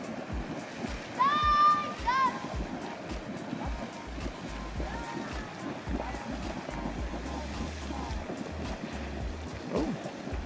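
A small geyser erupting, its water splashing in a steady rush of noise. A short high-pitched call cuts through about a second in.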